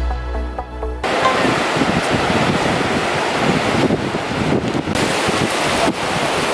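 Background music cuts off suddenly about a second in, giving way to loud, steady surf: sea waves washing in over a flat sandy beach.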